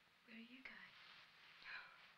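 Faint, low-voiced speech, close to a whisper, over a steady hiss.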